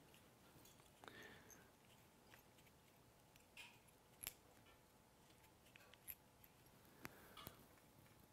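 Near silence with a few faint, scattered clicks and ticks as fly-tying materials and tools are handled at the vise.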